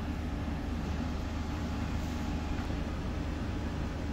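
Steady low machinery hum with an even hiss over it, unchanging throughout, with no distinct clicks or events.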